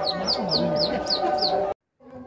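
A small bird calling: a quick run of about six high chirps, each falling in pitch, about four a second, over a murmur of voices. The sound cuts off abruptly near the end.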